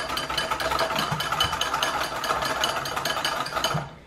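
Metal wire whisk beating fast against a glass bowl in a steady rattling rhythm, whipping instant coffee, sugar and hot water by hand for whipped coffee; the mixture has not yet reached stiff peaks. The whisking stops suddenly near the end.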